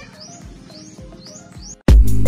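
Quiet electronic music intro: a soft beat with a short rising chirp repeating about twice a second. Near the end it cuts off and loud dance music comes in.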